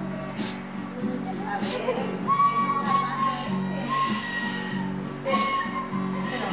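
Music: held notes over a low accompaniment, with a bright, whistle-like flute melody entering about two seconds in.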